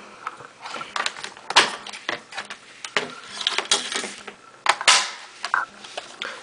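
Hands handling an audio cable with a 3.5 mm to 2.5 mm adapter and a plastic Stackmat timer: scattered small clicks and rustles, with three louder sharp knocks.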